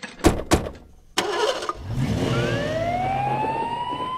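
Cartoon sound effects: ambulance doors slamming twice, then the engine starting and a siren winding up in one slow rising wail as the ambulance pulls away.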